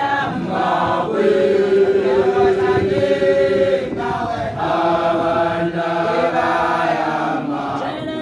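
A group of voices chanting a traditional Basotho initiation song together, in long held notes that shift pitch every few seconds.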